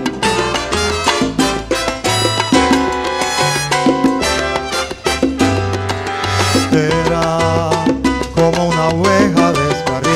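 Live salsa band playing an instrumental passage: a horn section of trombones, trumpet and saxophone over congas, timbales, keyboard and an upright bass line.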